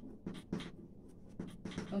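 Chalk writing on a blackboard: a run of short separate scratches and taps as words are written stroke by stroke.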